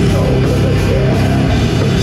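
Death metal band playing live: distorted electric guitar and bass over a drum kit, loud and dense without a break.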